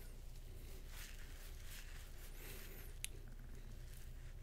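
Faint room tone with a steady low electrical hum, broken by a single short click about three seconds in.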